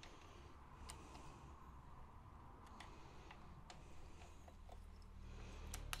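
Near silence with a few faint, scattered small clicks of metal screws, washers and a hex key being handled at a model tank's suspension arm.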